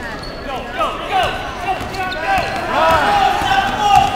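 Basketball dribbled on a gym floor and sneakers squeaking in many short chirps as players run a fast break, with spectators' voices calling out, loudest near the end.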